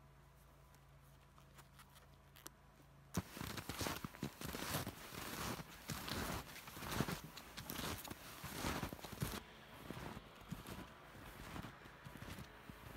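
Snowshoes crunching and scraping through snow at a walking pace, about two steps a second, starting about three seconds in after a quiet start.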